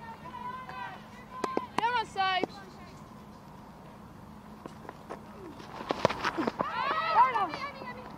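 Women cricketers' voices calling out on the field in short high shouts. A single sharp knock of bat on ball comes about six seconds in, followed by more calls.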